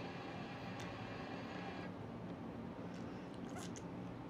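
Quiet room tone: a steady low hum and hiss, with a few faint clicks about a second in and again near the end.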